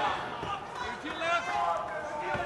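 Boxing arena crowd noise with voices calling out over it, and a single dull thud about half a second in.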